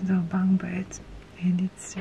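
A woman speaking in short phrases with brief pauses between them.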